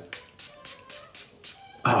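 Pump-spray aftershave bottle spritzed several times in quick succession, each pump a short sharp hiss.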